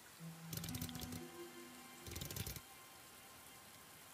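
Quiet anime soundtrack music with a few held low notes, with two short bursts of clicking rustle, about half a second in and again just after two seconds in.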